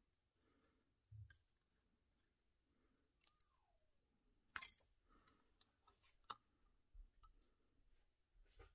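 Faint, scattered snips of scissors cutting a thin plastic sheet, heard as a handful of soft clicks with the loudest a little past the middle. Otherwise near silence.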